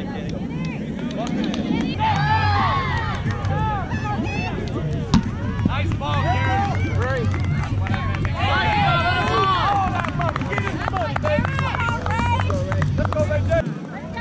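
Players shouting and calling out over each other on a kickball field, loudest in two bursts, with a single sharp thud about five seconds in as the rubber kickball is struck.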